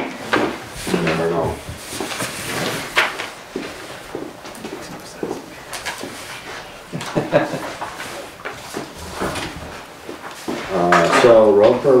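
Sheets of paper rustling and being shuffled as reports are handed out and leafed through, with scattered light knocks and some low murmured speech. Clear speech starts again near the end.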